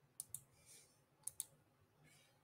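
Two pairs of sharp, quick clicks about a second apart, heard over near-silent room tone.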